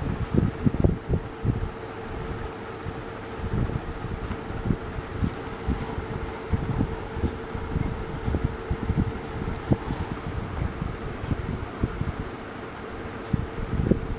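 Steady background hum with a held mid-pitched tone that fades out about three-quarters of the way through, over irregular low rumbling of air or handling on the microphone.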